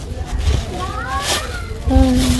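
Thin plastic bag rustling and crinkling as fingers pick open its knot, with a short rising high-pitched call about a second in. A low rumble runs underneath.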